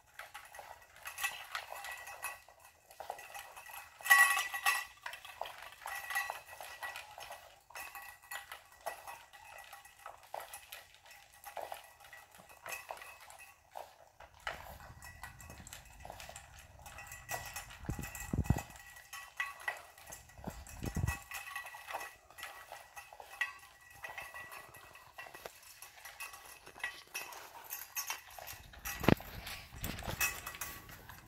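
A French bulldog eating fast from a stainless steel bowl: a long run of quick clinks and scrapes of food and teeth against the metal, the bowl ringing, loudest about four seconds in. A few dull thumps come in the second half.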